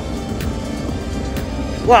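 A motorcycle engine running on the circuit, a steady low drone, heard under background music.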